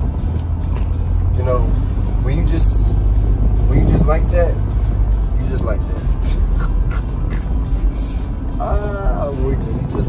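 Steady low rumble of a van's engine and road noise inside the cabin as it drives off, with music playing and a voice singing along in short snatches.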